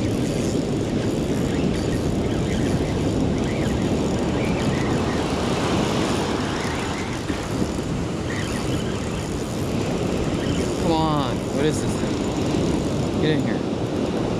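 Ocean surf washing in and breaking on a sandy beach: a steady rushing noise that eases slightly partway through and swells again.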